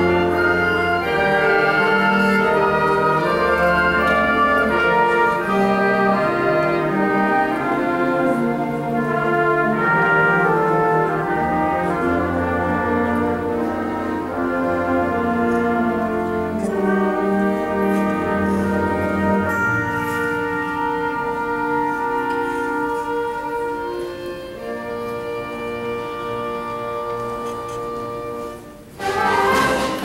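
High school concert band playing wind band music: brass and woodwinds together over low brass notes. About two-thirds of the way through the sound thins and grows softer. It dips briefly, then the full band comes back in loudly just before the end.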